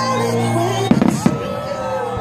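Aerial fireworks bursting, with two sharp bangs about a second in, a third of a second apart, over a pop song playing.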